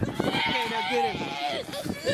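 Young people's voices laughing and shouting, with no clear words, in short wavering bursts.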